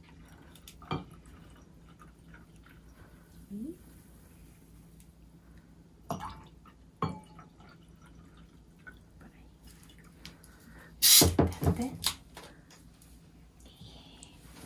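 Sparkling wine poured from a glass bottle into wine glasses, liquid trickling with sharp glass clinks at times and a louder clatter about eleven seconds in.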